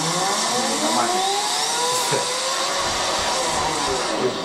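An engine revving, several pitched lines rising and falling together in slow arcs.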